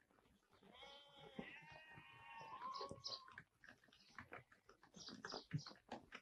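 Faint bleating of sheep or goats, several wavering calls overlapping for a few seconds. Near the end come the first faint clops of horses' hooves walking on a dirt road.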